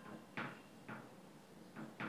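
Red marker pen writing on a whiteboard: a few short, faint strokes as the letters are drawn.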